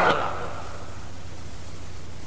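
Steady hiss with a low hum underneath, the noise floor of an old cassette tape recording, left after a man's voice cuts off at the very start.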